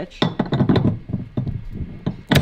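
A quick run of sharp knocks and clatter as the metal hitch insert is handled and raised toward the car's rear hitch receiver.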